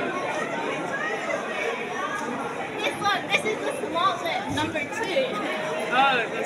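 Background chatter of many people talking at once in a large hall, a steady babble of overlapping voices with no single voice standing out.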